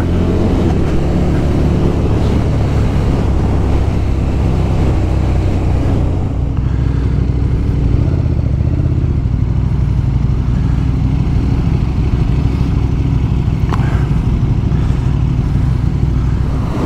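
A motorcycle's V-twin engine running steadily at road speed, with wind rushing past the bike-mounted microphone.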